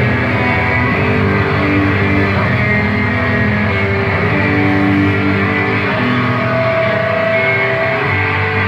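Loud live band music filling the room, a dense, unbroken texture of sustained notes.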